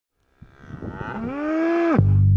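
A Holstein dairy cow mooing: one long moo that rises in pitch and then holds, cut off suddenly at the end. A few short knocks come before it.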